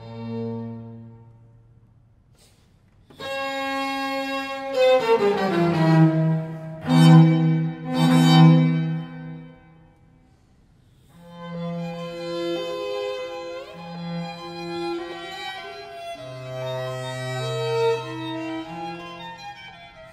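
String quartet of two violins, viola and cello playing classical chamber music. Its phrases twice break off into brief pauses, about two seconds in and again about ten seconds in, before the bowed chords resume.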